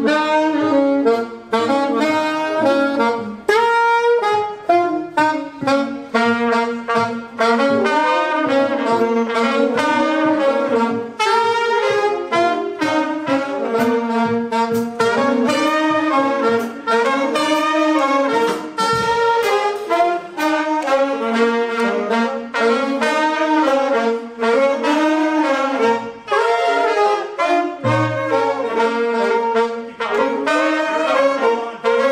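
A jazz band's saxophone section with trumpets playing a simple melody together in short repeating phrases, drawn from the concert B-flat minor pentatonic scale, over piano, upright bass and drums.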